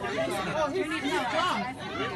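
Indistinct voices talking in an airliner cabin, heard from a phone-recorded video being played back, quieter than close-miked speech.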